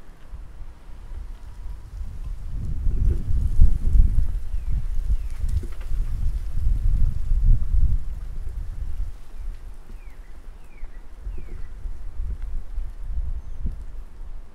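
Wind buffeting the microphone: an uneven, gusty rumble that swells from about two seconds in, peaks around four, and eases after about eight seconds.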